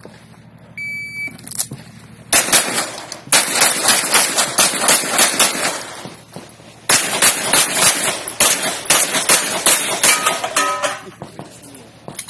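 An electronic shot timer gives one short high beep, then pistol shots follow in rapid strings of many shots each, with a short break of under a second in the middle of the course of fire.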